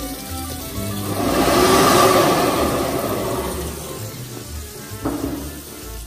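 Hand dryer built into a sink tap blowing air onto hands: a whoosh that swells about a second in and fades out after a few seconds, with background music underneath.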